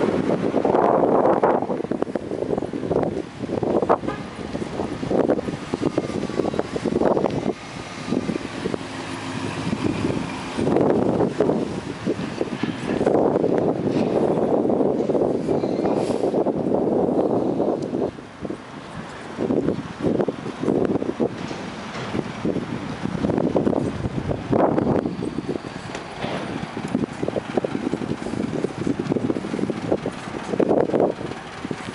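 Wind buffeting the microphone while riding a bicycle, a loud, uneven rumble that rises and falls in gusts, easing briefly a little past the middle.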